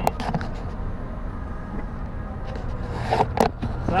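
Steady low rumble of a car's road and engine noise, heard from inside the cabin while it creeps along in highway traffic. A few sharp clicks come at the start and again about three seconds in.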